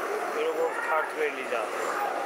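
A man talking, with street traffic going by behind him.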